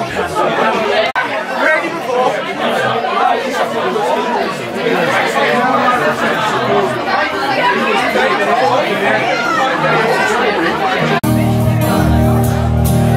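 Many people chatting at once in a busy pub room. Just before the end it cuts abruptly to acoustic guitars strumming.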